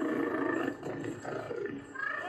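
A Predator creature's roar, a rough, growling film sound effect that is strongest in the first half-second or so, dips briefly, then goes on more raggedly before fading near the end.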